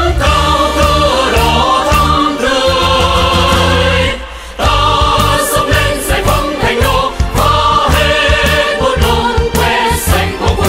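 Vietnamese military marching song sung by a choir over full band accompaniment. The music dips briefly about four seconds in, then comes back in full.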